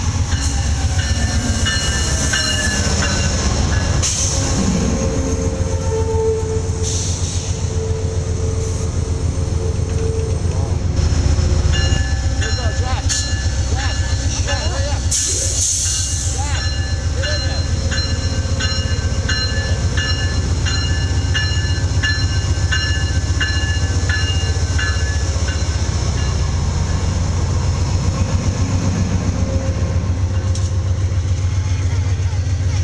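Amtrak GE Genesis P42DC diesel locomotive and its passenger train arriving and rolling past at close range, with a steady deep engine rumble. Through the middle of the passage a locomotive bell rings in an even rhythm of about two strikes a second.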